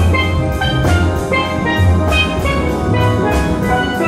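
Steel drum band playing live: many steel pans struck with mallets in a dense run of ringing notes, over a strong low bass part and drums.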